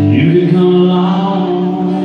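A man's singing voice holding one long note over acoustic guitar at a live rock/country show, the pitch sliding up into the note just after the start.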